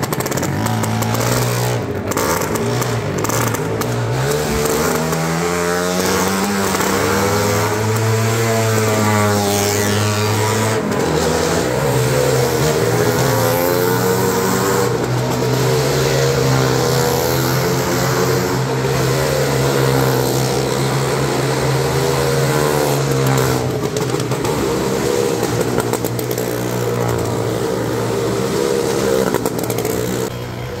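Motorcycle engines running hard as riders circle the wooden wall of a well-of-death pit, the engine note wavering up and down as they go round. Loud and steady throughout.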